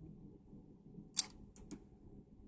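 A few short, sharp clicks over faint room noise: one clear click about a second in, then two fainter ones just after.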